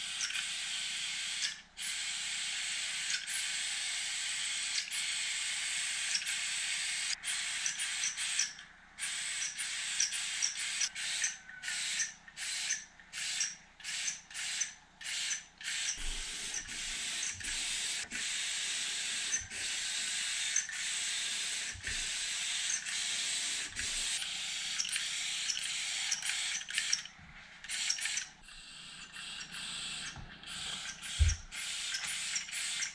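Gravity-feed compressed-air paint spray gun hissing as it sprays paint. It runs steadily at first, then cuts on and off in quick short bursts as the trigger is pulled and released, with longer, steadier passes again later.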